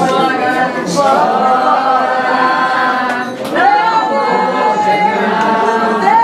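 A group of people singing together, in long held notes that glide from one pitch to the next.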